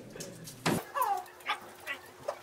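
A sharp click, then a brief muffled whimpering squeal that falls in pitch, with two short squeaks after, from a person whose mouth is full of candy.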